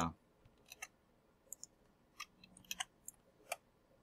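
Faint, scattered clicks of a computer mouse and keyboard as lines of code are selected, copied and pasted, about a dozen irregular clicks.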